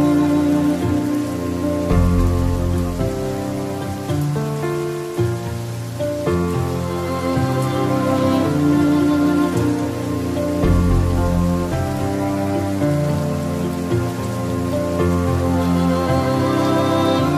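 Steady rain mixed with slow, calm instrumental music of held chords and low bass notes that change every second or two.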